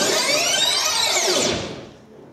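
Music soundtrack breaking off into a sweeping sound effect of many rising and falling pitch glides, which fades out near the end.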